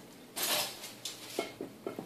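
Light handling of dishes on a table: a brief scrape about half a second in, followed by a couple of faint clicks.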